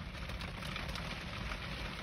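Rain falling steadily on a car's windshield and roof, heard from inside the cabin, with a low steady rumble beneath it.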